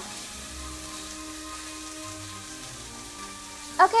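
Salmon fillets sizzling steadily in an oiled non-stick grill pan over a gas flame, with soft background music underneath.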